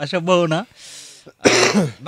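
A man's voice: a short vocal sound, then an audible breath, then a loud throat-clearing about one and a half seconds in.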